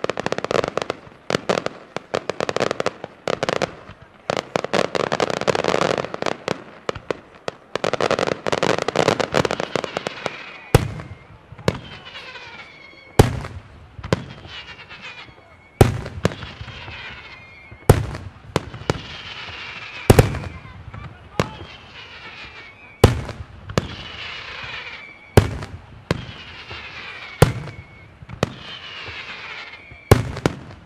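Aerial firework shells bursting. For about the first ten seconds there is a dense run of rapid crackling reports. After that come single loud shell bursts roughly every two seconds, each followed by a falling whistle-like tone.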